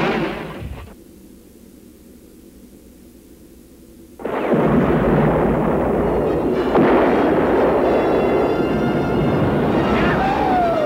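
Film sound effect of a spaceship exploding: a sudden blast that dies away within a second, a low hum, then about four seconds in a loud, sustained explosion roar that runs on, with music under it.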